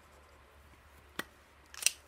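A sharp click about a second in, then a louder quick cluster of clicks near the end: a plastic fine line pen being put down on the desk.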